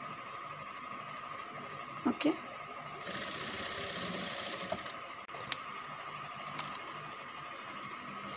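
A sewing machine runs a short burst of stitches through the folded skirt fabric, a fast even needle clatter lasting about two seconds from about three seconds in, to tack down a box pleat. A few light clicks follow as the fabric is handled.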